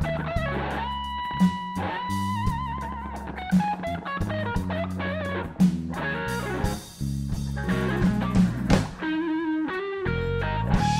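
Live blues band playing: an electric guitar holds long lead notes with vibrato over a bass line and a drum kit keeping the beat.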